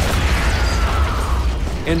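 Movie explosion from a grenade-launcher blast: a deep rumble with crackling debris that fades out over nearly two seconds.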